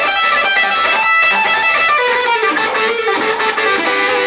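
Electric guitar playing a fast lead lick that mixes two rhythms: a rapid run of short picked notes, then, about halfway through, a few longer, lower notes.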